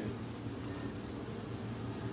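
Faint, steady hiss of a sandwich frying on a stovetop griddle under a cast-iron skillet, with a low hum underneath.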